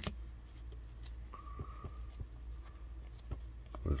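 Cardboard trading cards handled and slid through by hand: a sharp click at the start, then faint scattered clicks and slides over a steady low hum.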